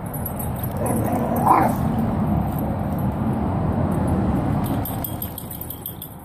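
Several dogs play-fighting, with a steady low rough noise throughout and one short bark about a second and a half in.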